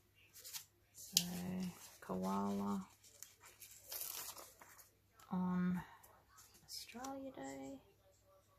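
A paper sticker being peeled off its backing sheet: a short tearing rustle about halfway through, with a few light clicks of paper handling earlier. A woman hums a few short, level notes over it.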